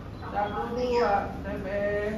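A person's voice, drawn out and wavering in pitch rather than forming words, with a falling sweep about a second in.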